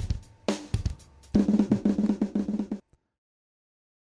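A drum track played back with a band EQ plug-in applied. A few separate hits are followed by a busier run of drum beats over a low steady tone, and the sound cuts off suddenly about three seconds in.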